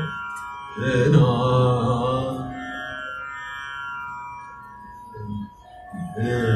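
A man singing a long, slowly fading phrase of a Hindustani raga, accompanied by a harmonium. The phrase begins about a second in, and another starts near the end.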